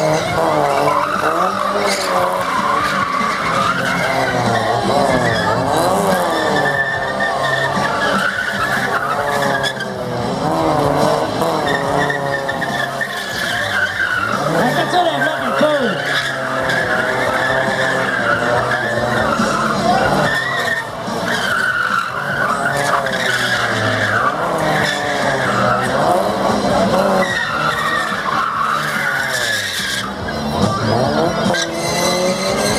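Engine of a first-generation Mazda MX-5 Miata revving hard, its pitch rising and falling over and over while the car drifts in circles. The tyres skid and squeal on the wet pad.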